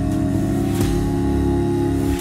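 An a cappella vocal group holds a sustained chord over a deep, steady bass note, with one upper voice gliding slowly upward.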